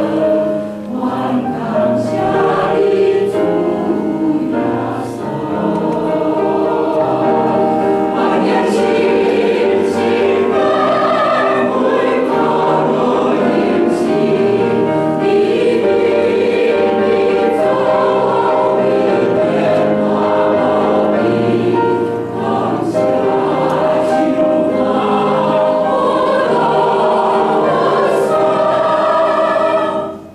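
Church choir singing a Taiwanese-language hymn in several voices, steady and full throughout.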